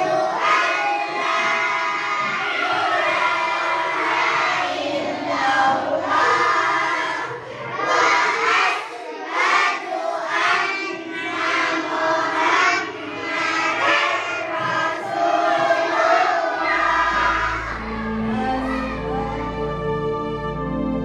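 A class of young children singing together loudly. Near the end, a soft background music track with low sustained notes fades in.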